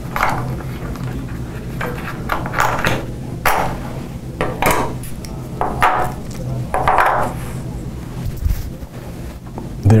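Small plastic fraction tiles clacking as they are picked up and set down on a tabletop: several separate sharp clicks about a second apart, over a faint steady hum.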